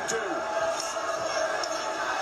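Televised boxing broadcast audio: a commentator's voice over steady arena crowd noise.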